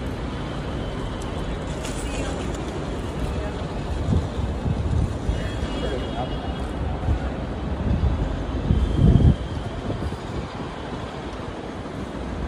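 Outdoor ambient noise: a steady traffic rumble with voices of people around. Low rumbling swells come about four seconds in and, loudest, about nine seconds in.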